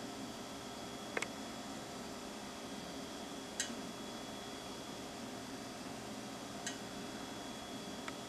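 Quiet room tone: a steady hiss with a faint high whine, broken by three faint clicks about a second, three and a half seconds and nearly seven seconds in.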